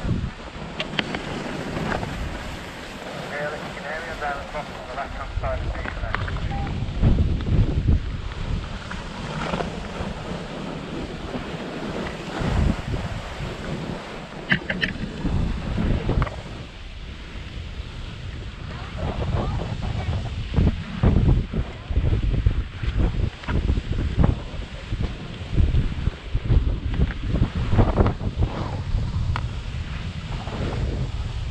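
Wind buffeting an action camera's microphone in uneven gusts, over the steady hiss and scrape of skis sliding and turning on packed snow.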